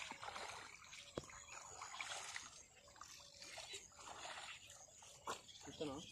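Shallow pond water splashing and trickling at a low level, with a few sharp clicks. A short voice sound comes just before the end.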